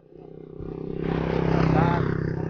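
A motorcycle tricycle with a covered sidecar driving past close by, its engine running louder through the first second and a half and at its loudest near the end.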